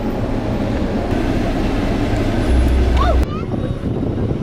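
Steady car running noise with a low rumble, heard from a vehicle driving through the park, with a couple of short chirps over it about three seconds in.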